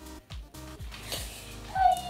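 Background music with a steady bass beat. Near the end a loud, high-pitched, meow-like cry cuts in.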